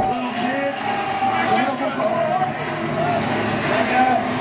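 Live death metal band playing loud in a small club: a dense amplified rumble with sustained, wavering pitched tones over it, and the vocalist growling into the microphone.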